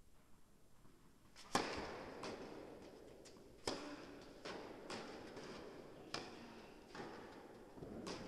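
Tennis ball struck by rackets and bouncing on the court, each hit echoing in an indoor hall. The first and loudest hit is about one and a half seconds in, then a rally of sharper and fainter hits and bounces follows every second or two.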